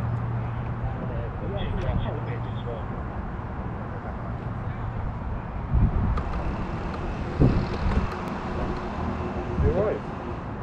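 Faint voices talking, over a steady low hum that fades out around halfway. Three low thumps come about six, seven and a half, and nine and a half seconds in.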